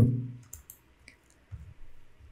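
A few faint computer mouse clicks, short and sharp, about half a second to a second in, as a link in a web page is clicked. The tail of a man's speech fades out at the start, and a soft low sound comes near the end.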